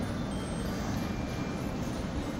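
Steady low rumble of indoor ambient noise, even throughout, with no distinct events.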